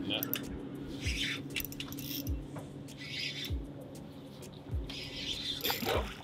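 Hooked redfish splashing at the water's surface in short bursts as it is reeled toward the boat. Soft low thumps come about once a second.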